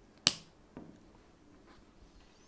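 A single sharp click, followed about half a second later by a fainter knock.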